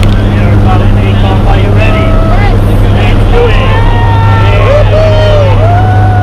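Loud, steady drone of a small skydiving plane's engine and propeller, heard from inside the cabin, with voices raised over it.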